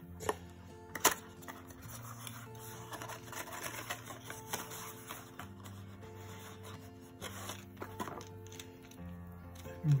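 Small cardboard box being handled and opened: rustling, scraping and sharp taps, the loudest tap about a second in, with soft background music underneath.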